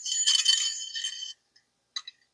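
A steel coil spring sliding down the shotgun's steel tube, scraping and jingling for about a second and a half, then a short clink at the end.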